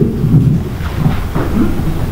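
Handling noise on a handheld microphone: a low rumble with some knocks as the mic is moved about.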